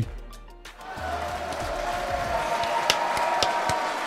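Stadium sound from a televised NFL game broadcast: music over a crowd's din, swelling in about a second in and easing off near the end.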